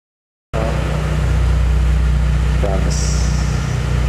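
A car engine idling with a steady low drone, cutting in abruptly about half a second in, with brief voices over it and a short high hiss about three seconds in.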